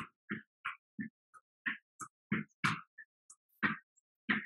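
Plank jacks: short, quick bursts about three a second from the feet landing on the mat and hard breathing, each cut off sharply into silence.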